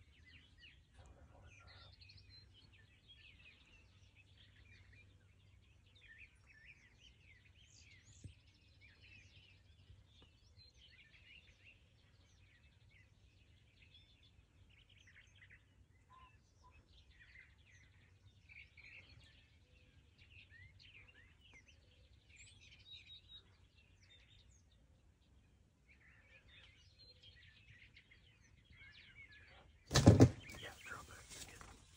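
Faint, scattered chirping and calls of small songbirds: many short high notes over a quiet, steady low background, with one small knock about eight seconds in.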